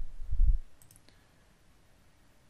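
Computer mouse clicks on a desk: low thuds in the first half-second, then a couple of faint sharp clicks just before a second in, then quiet room tone.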